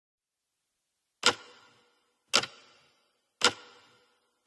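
Three sharp, evenly spaced clicks a little over a second apart, each with a short ringing tail.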